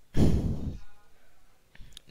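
A single loud sigh or exhale close to the microphone, lasting about half a second just after the start.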